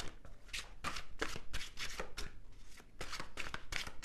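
A deck of tarot cards being shuffled by hand: a quick run of short papery swishes, about four a second.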